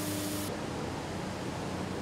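Steady hum and hiss of recycling-plant machinery, with a low steady tone that stops about half a second in, leaving a duller, even noise.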